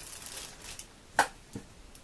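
Rustling and handling of packaged yarn skeins, with one sharp click about a second in and a softer knock just after.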